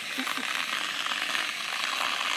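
Dry-chemical fire extinguisher discharging from its hose: a steady, even hiss of powder and propellant spraying out.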